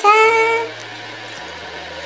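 A woman's voice holding one drawn-out spoken syllable, then quiet room sound with a faint steady low hum.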